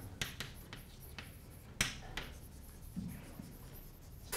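Chalk writing on a blackboard: a run of short scratches and taps as words are written out, with one sharper tap near the middle.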